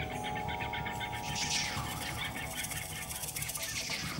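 Live percussion playing: vibraphone notes ring on and overlap, entering one after another at rising pitches, over fast, busy drum and percussion strikes. A brief rushing noise rises and falls about a second and a half in.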